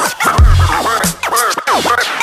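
Turntable scratching over a hip-hop beat: a record cut back and forth by hand, each scratch sweeping up and down in pitch, several in quick succession.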